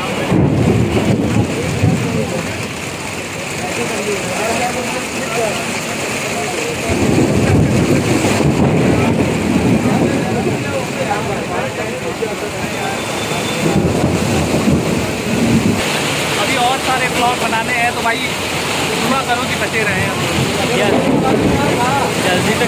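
Heavy rain pouring during a thunderstorm, with deep rumbles of thunder swelling up a few times.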